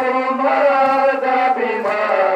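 A crowd of men chanting a Muharram mourning lament (nauha) together in long held notes. A dull beat falls about once a second, typical of rhythmic chest-beating (matam).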